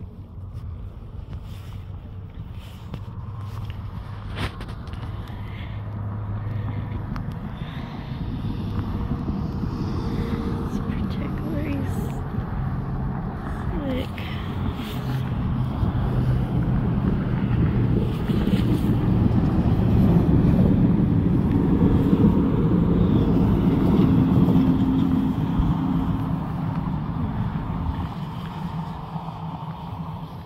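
Road traffic: vehicle noise that slowly swells to its loudest about twenty seconds in, then fades away.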